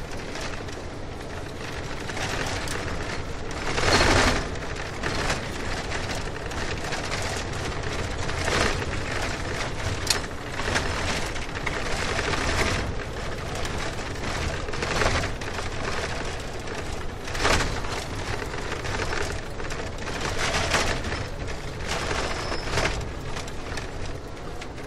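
A car driving, with steady road noise and repeated thumps and knocks, the loudest about four seconds in.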